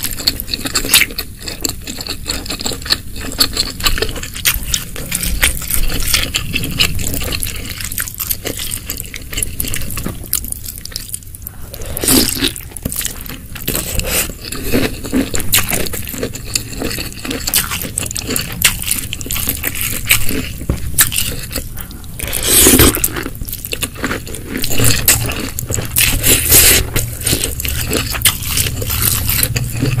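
Close-miked wet chewing and squishing of saucy snow fungus (tremella) in spicy seblak, with many small clicks and crackles of the mouth and the wooden spoon against the glass dish. Two louder, longer wet sounds come about twelve and twenty-three seconds in.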